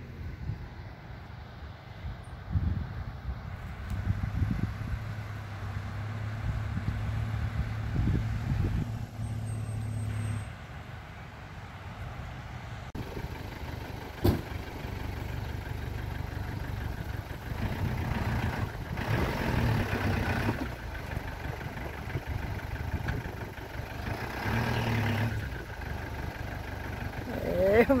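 A motorhome van's engine running, rising and falling in loudness a few times as the van sits bogged down in soft sand. One sharp click about halfway through.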